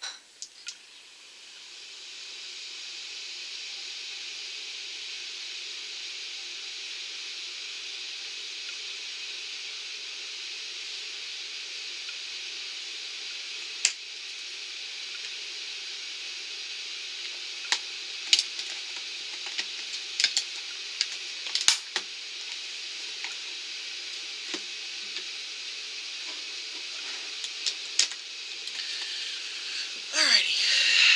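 A steady hiss, fading in over the first two seconds or so, with scattered light clicks and taps from about halfway through.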